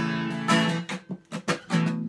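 Steel-string acoustic guitar strummed in a solo instrumental break. About a second in come a few short, clipped strums with near silence between them, then the chords ring on again.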